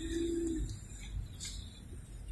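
A dove cooing: one low, steady note lasting about half a second, over a low background rumble.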